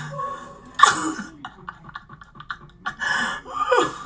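Two short, harsh, cough-like vocal outbursts, one about a second in and a longer one near the end, with a scatter of small clicks and knocks between them.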